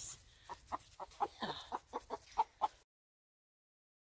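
Hen clucking, a quick run of short clucks at about five a second, while she is held and her legs are scrubbed. The sound cuts off suddenly about three seconds in.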